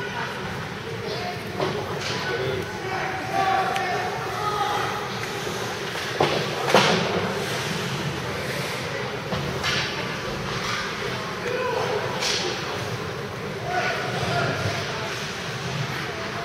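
Indoor ice rink during a youth hockey game: indistinct spectator voices echoing through the arena, with sharp knocks from play on the ice. The loudest are two close cracks about halfway through and another a few seconds later.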